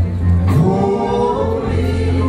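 Gospel singing by several voices over a live band with a steady bass line. The voices come in about half a second in.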